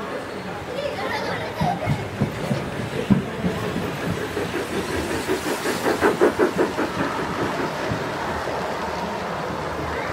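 Large-scale garden model train passing close by, its wheels clicking rhythmically over the rail joints about five times a second, loudest a little after the middle. Voices murmur in the background.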